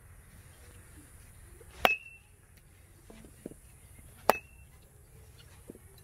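Metal youth baseball bat hitting a ball twice, about two and a half seconds apart, each contact a sharp ping with a brief high ring.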